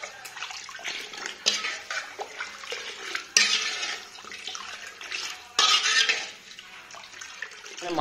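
A metal spoon clinking and scraping in a metal cooking pot, with a few short swishing strokes of stirring through liquid.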